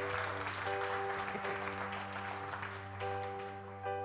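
Congregation applauding over sustained background chords. The applause is strongest at the start and thins out, while the held chords carry on.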